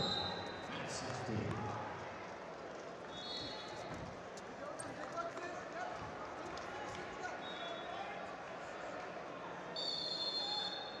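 Wrestling-arena ambience in a large hall: a steady bed of indistinct voices from coaches and spectators, with occasional thuds from the wrestlers' feet and bodies on the mat. Brief high steady tones sound a few times, about three seconds in, near eight seconds and at the end.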